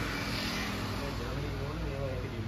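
A steady low hum and rumble, with faint voices talking in the background.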